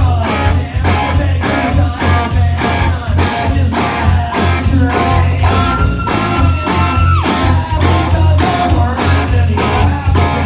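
Live rock band playing at full volume: electric guitar over a bass line and a steady beat. A long held note sounds about halfway through, then drops away sharply.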